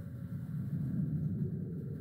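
Low, steady rumble on a horror short film's soundtrack, slowly growing louder.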